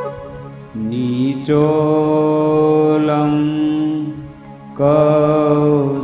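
Man's voice chanting a Hindu mantra in long, held notes: one phrase starts about a second in and another just before the end.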